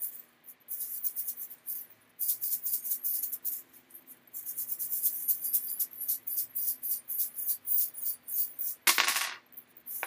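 A handful of small metal charms being shuffled, giving a rapid, dense run of clinking with a few short pauses. Near the end there is one short, loud hissing rush.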